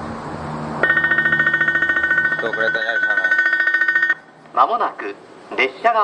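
Electric railway warning bell ringing rapidly for about three seconds and then cutting off suddenly, signalling that a train is approaching.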